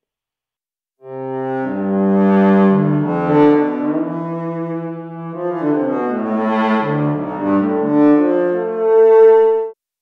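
Synthesized cello patch in Surge XT, a filtered pulse wave, played as a phrase of sustained low notes that step in pitch and often overlap. An EQ boost around 172 Hz imitates the cello body's resonance. The phrase begins about a second in and swells loudest near the end before stopping abruptly.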